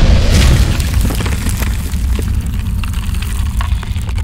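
Cinematic logo-reveal sound effect: a deep boom at the start that settles into a steady crackling rumble.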